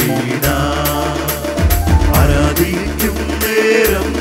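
Christian worship song performed live: a group of singers with keyboards and a steady beat of about two strokes a second.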